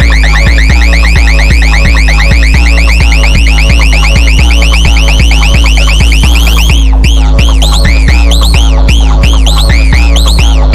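Brazilian funk beat with deep, heavy bass and a steady pulse. Over it a rapid, high repeating chirp slowly rises in pitch, then changes about seven seconds in to slower rising-and-falling whoops.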